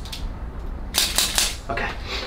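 Small joints of the foot's arch popping under a chiropractor's hand manipulation: a quick run of four or five sharp cracks about a second in.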